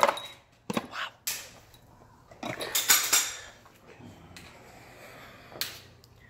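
Steel drive pins for a powder-actuated nail gun clinking and rattling as they are picked out of a cardboard box and handled, a few sharp metallic clicks with a longer clatter in the middle.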